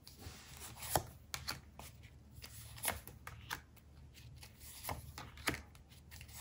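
Oracle cards being handled and dealt out onto a card spread: a scattering of faint, short card snaps and taps as they are drawn from a hand-held stack and laid down.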